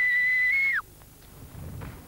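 A single steady whistled note lasting about a second, which steps up slightly and then slides downward as it stops.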